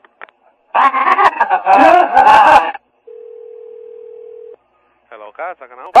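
A steady telephone line tone, a single pitch held for about a second and a half, comes about halfway through. It is set between a loud stretch of voice before it and more voice near the end.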